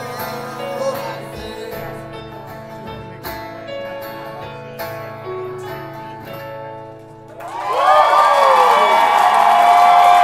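A live band's song ending: acoustic guitar and keyboard hold their last chords, which fade down. About seven and a half seconds in, the crowd breaks into loud cheering, whooping and applause.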